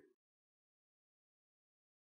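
Silence: a dead-quiet pause between sentences of a spoken audiobook narration.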